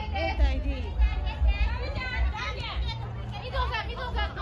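Several people's voices talking over one another in lively, high-pitched chatter, with a low rumble underneath.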